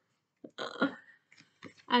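A woman's short wordless vocal sound, followed by faint clicks of a tarot deck being shuffled in the hands.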